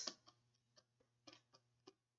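Near silence with a handful of faint, irregular ticks from a stylus tapping and sliding on a pen tablet while words are handwritten.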